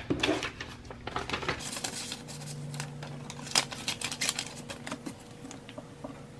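Paper envelopes and a paper bill being handled on a desk: rustling and crinkling with scattered light taps and clicks.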